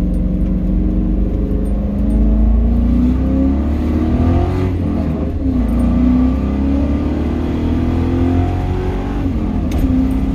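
1999–2004 Ford Mustang GT's 4.6-litre V8 accelerating through the gears: the engine note climbs, falls back at a gear change about five seconds in, then climbs again and drops at another shift near the end.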